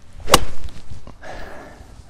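Golf club swung and striking a ball off turf: a short swish of the downswing, then one sharp crack of impact about a third of a second in.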